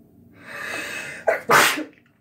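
A woman with a head cold sneezing: a breathy intake builds for about a second, then a short catch and one loud sneeze burst out about a second and a half in.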